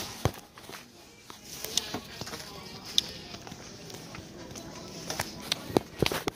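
Handling noise from a phone being carried, with a few sharp clicks and knocks against the microphone over faint background voices and music.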